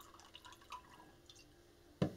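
Liquor poured from a bottle over ice cubes in a glass tumbler: faint splashing with small clicks from the ice, loudest about three quarters of a second in and tapering off after about a second and a half.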